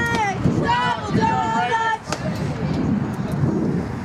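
Girls' voices calling out drawn-out, sing-song cheers: one held call ends just after the start and another comes about a second in. They are followed by a jumble of background chatter.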